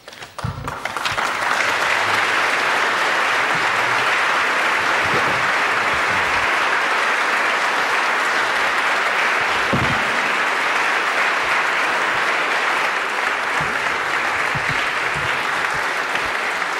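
Audience applauding: the clapping builds over the first second or so and then holds steady.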